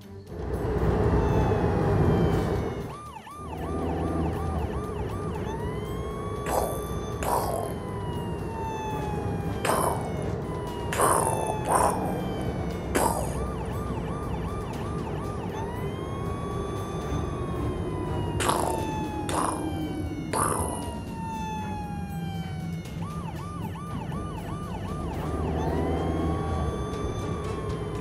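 Police siren alternating a slow rising-and-falling wail with a fast warbling yelp, over a steady low vehicle rumble. About nine short, sharp swishing noises cut through between about six and twenty-one seconds in.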